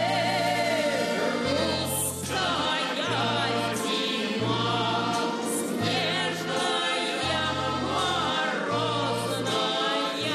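Russian folk-style song with female voices, a choir and a lead singer, over instrumental backing. The bass notes change about once a second.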